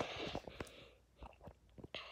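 Faint handling noise: a soft rustle at the start, then a few light clicks as the toys and camera are handled.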